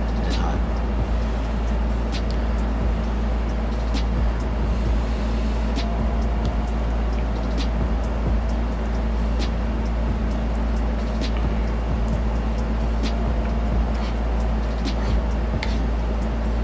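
Someone eating oatmeal from a mug with a metal spoon: short sharp clicks of the spoon and mouth every second or two. Under it runs a steady low hum.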